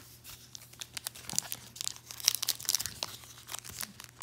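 Crinkling of a 2019 Topps Allen & Ginter trading card pack wrapper as it is handled and torn open at its crimped seam, in quick, irregular crackles.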